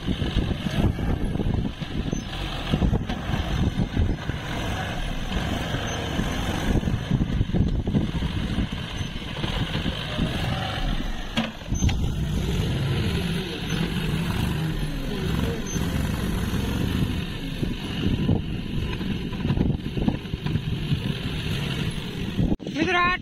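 John Deere tractor's diesel engine running steadily as its front loader scoops and lifts soil and manure into a trolley, with one sharp knock near the middle.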